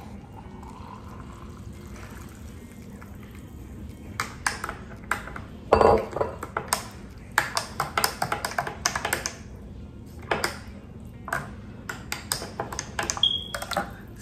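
Water poured into a glass, then a spoon stirring protein powder into the water, clinking sharply and irregularly against the glass from about four seconds in, with one short ringing ping near the end.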